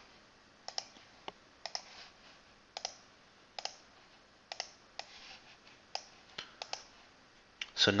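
Computer mouse clicking: about a dozen short, sharp clicks spaced irregularly, some in quick pairs, with quiet between.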